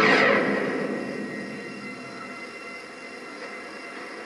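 A sudden rush of noise from a television soundtrack, loudest at the start and fading over about two seconds into a low, steady hiss.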